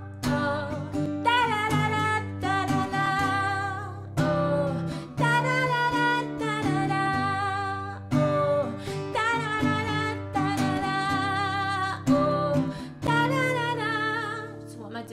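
A woman singing a loud, big chorus melody with vibrato in several phrases, over strummed acoustic guitar chords.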